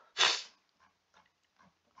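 A man's short, sharp breath out through the nose, a stifled laugh, followed by a few faint breaths.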